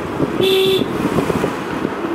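A car horn toots once, briefly, about half a second in, over the steady noise of a car driving along.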